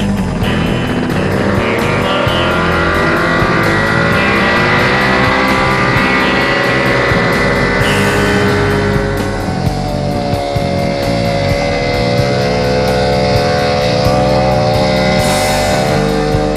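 Small single-seat hovercraft's engine started and revving up, its pitch rising over the first few seconds, then running steadily, with another change in pitch about two-thirds of the way through as it is throttled. Music with guitar plays along with it.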